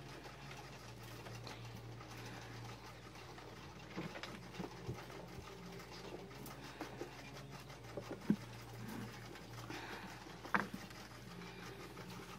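Young dumbo rat moving about on wood-shavings bedding: faint rustling and scratching with a few short sharp clicks scattered through, the clearest about eight and ten and a half seconds in, over a low steady hum.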